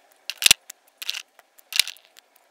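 Plastic liquid lipstick tubes and caps clicking and knocking together as they are handled, in three short bursts of sharp clicks.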